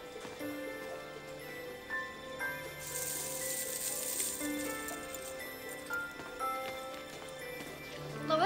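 Background music score with soft held notes that change every second or so, and a brief hissy swell about three seconds in.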